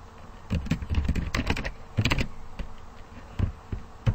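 Computer keyboard typing: a quick run of keystrokes over the first two seconds or so, then two single key presses near the end.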